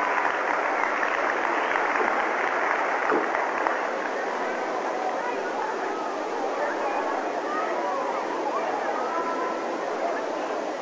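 Steady murmur of a large arena crowd, many voices blending into an even hum.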